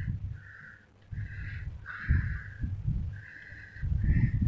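A series of short, harsh bird calls, about five or six in four seconds, over an uneven low rumble.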